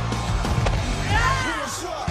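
Fight-scene soundtrack: a low, steady music bed with two sharp hits in the first second, then voices shouting about a second in.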